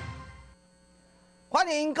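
The tail of a TV show's theme music fading out, then about a second of near silence with a faint steady electrical hum, before a man starts speaking near the end.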